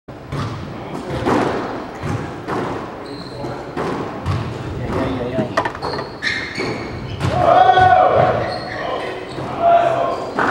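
A squash rally: repeated sharp hits of racquet on ball and ball on the walls and floor, about one to two a second, echoing in the enclosed court.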